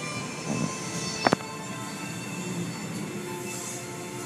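Automatic car wash heard from inside the car: water spray pouring over the windshield and body over a steady hum of the wash machinery, with one sharp knock about a second in.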